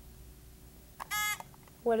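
Short electronic buzz-in tone, one steady high beep about a second in, lasting under half a second: a contestant ringing in to answer.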